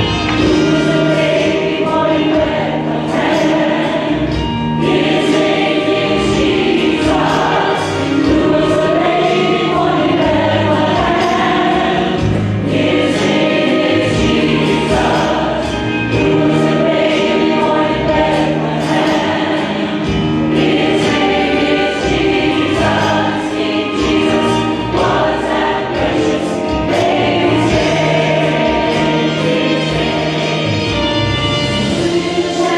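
Mixed church choir singing a gospel song over instrumental accompaniment, continuously and at full voice.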